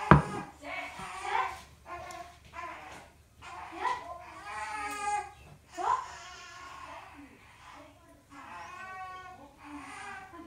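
A child's voice making wordless, babbling and whiny calls, with a sharp knock right at the start.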